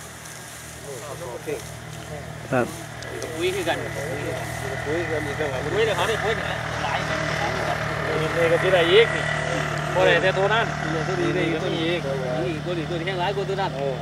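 Several people's voices talking in the background, starting about three seconds in and carrying on to the end, over a steady low mechanical hum. A single sharp click about two and a half seconds in.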